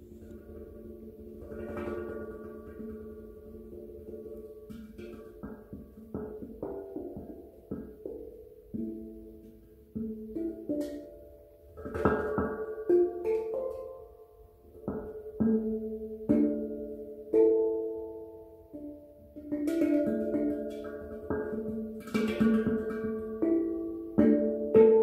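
Steel handpan played with the fingertips: single struck notes that ring on and overlap in a slow melody. It starts soft and grows louder and busier about halfway through.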